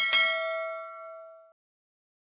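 Notification-bell ding sound effect for a subscribe-button animation: one bright bell strike that rings for about a second and a half, fading, then cuts off abruptly.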